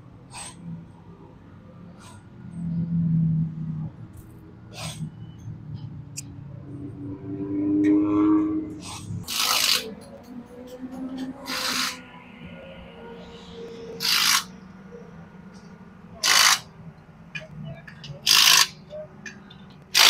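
Cordless impact wrench run in five short bursts about two seconds apart in the second half, spinning the lug nuts on a dirt modified race car's wheel during a wheel change.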